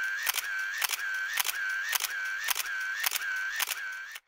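A looped electronic sound effect repeating about twice a second: each cycle is a sharp click followed by a short high tone that dips slightly in pitch and comes back up, in the manner of a camera shutter.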